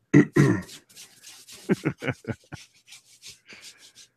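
Short non-speech vocal sounds from a man close to the microphone: one throat clear, then a string of brief breathy mouth noises.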